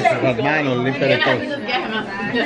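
Several people talking over one another.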